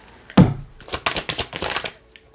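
Tarot cards being shuffled by hand: a sharp knock about half a second in, then a quick run of light card clicks.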